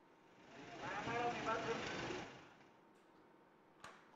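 Outdoor field sound: a hiss of background noise with faint, indistinct voices for about two seconds, then dropping to a low background, with a single short click near the end.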